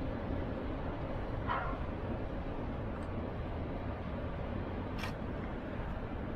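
Steady low outdoor rumble with a single short bark from a dog about a second and a half in, and a sharp click near the five-second mark.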